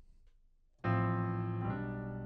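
Piano playing a low, rich chord struck about a second in and left ringing, with another note added just before the end.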